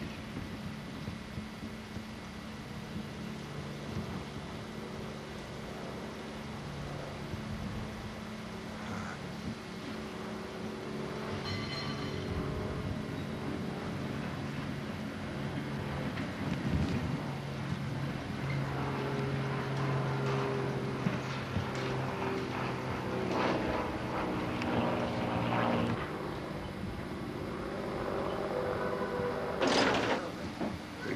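Electric resort trolley running, a steady humming drone of several tones that shift pitch in steps, with some clatter in the second half.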